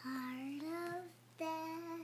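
A toddler girl singing two long held notes with a short pause between them, the first sliding gently upward.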